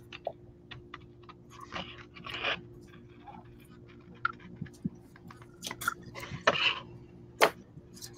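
Scissors cutting through a sheet of patterned scrapbook paper along a curve: a run of short crunchy snips and clicks, with a few louder crunches as the blades close and the page is turned.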